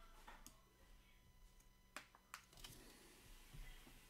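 Near silence, with a few faint, sharp clicks or taps, the clearest about halfway through and two more soon after.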